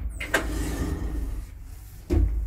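Elevator machinery of a modernised 1972 Wertheim traction lift setting off suddenly: a motor whir with a sharp click about a third of a second in, easing off after about a second and a half.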